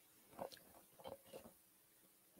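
Near silence with a few faint, short clicks and scrapes of food being arranged on a plate, three soft touches in the first second and a half.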